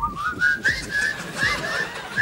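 Dolphin-style whistling chatter: a quick run of short rising whistles and chirps, with clicks underneath.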